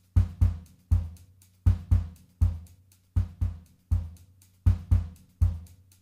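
Toontrack EZdrummer 2 sampled drum kit playing a kick-and-hi-hat loop in 6/8 at 120 BPM, the snare taken out, with a group of three kick hits repeating every second and a half and lighter hi-hat ticks between. The mic bleed into the overhead microphones is turned all the way up, giving a more open sound.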